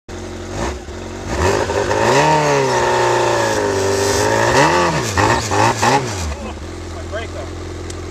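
Yamaha snowmobile engine revving: the pitch climbs and holds high for a few seconds, then several quick blips before it settles back to a steady idle. The sled does not move because its brake is still on.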